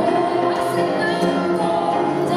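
Live pop song: a woman singing lead, joined by a second woman's harmony voice, over acoustic guitar, with notes held steadily.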